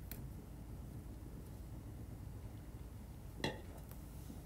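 Mostly quiet room tone with a faint click just after the start, then a short muffled splutter about three and a half seconds in from a man with his hand over his mouth, reacting to a mouthful of snack and Coca-Cola.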